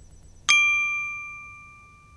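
A single bright chime struck about half a second in, its ringing tones fading away slowly: a logo-reveal sound effect on a news channel's outro card.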